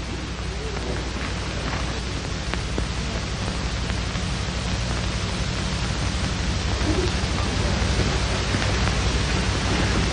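Steady hiss with a low hum, an old worn soundtrack's noise floor, slowly growing louder, with a few faint clicks.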